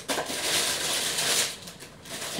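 Paper packaging rustling and crinkling as a shoe box is unpacked by hand, dying away about a second and a half in.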